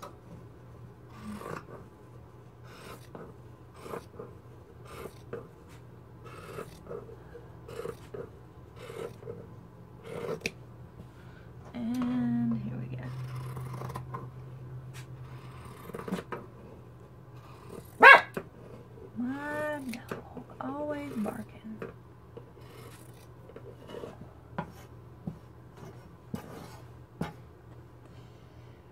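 Scissors snipping through knit fabric in a steady run of short cuts, about one or two a second. In the middle come a few short voice-like sounds: a brief held hum, one sharp loud call, then two calls that rise and fall in pitch.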